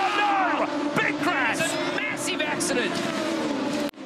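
Aussie Racing Cars' engines running flat out on the straight in a TV broadcast mix, with a steady engine tone. The sound drops out briefly just before the end.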